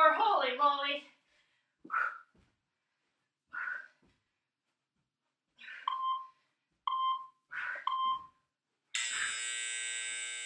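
Hard exhales from a person exercising, then an interval timer's three short beeps about a second apart and a long buzzer near the end, marking the end of the work interval and the start of the rest.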